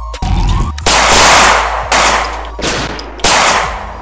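Gunshot sound effects: about five loud, sudden shots over three seconds, each trailing off in an echo, as the beat drops out.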